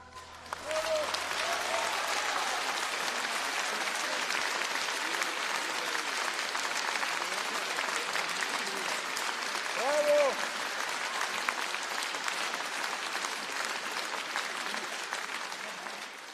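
Large concert-hall audience applauding, starting about half a second in as the last guitar note dies away, with a few voices calling out above the clapping, the loudest about ten seconds in.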